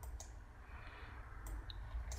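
Two faint computer mouse clicks about a second apart, over a low steady hum.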